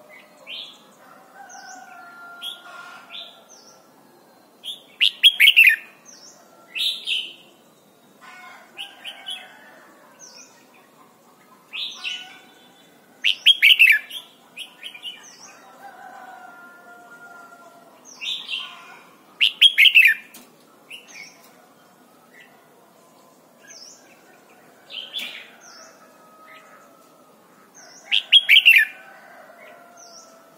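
Red-whiskered bulbul singing: four loud, quick warbled phrases spaced about seven to eight seconds apart, with softer short calls in between.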